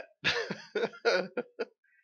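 A man laughing in a string of short bursts, about five, that grow shorter and fainter toward the end.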